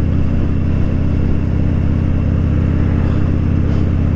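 2016 Harley-Davidson Dyna Fat Bob's V-twin engine running at a steady cruising speed, heard from the rider's seat.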